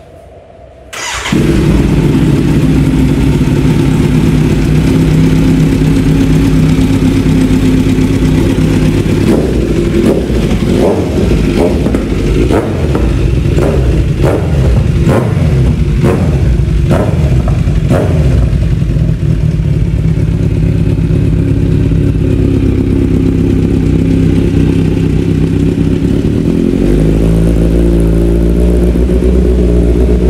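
Kawasaki Z900 inline-four through an aftermarket titanium header and Akrapovič slip-on exhaust, starting about a second in and idling, then given a quick run of throttle blips, about a dozen in nine seconds. It settles back to idle, and near the end the revs rise again.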